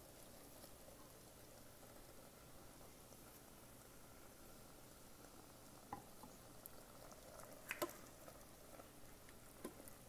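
Near silence: a faint sizzle from dal and tomatoes cooking in a stainless-steel Instant Pot insert, with a few light clicks of a wooden spoon against the pot in the second half.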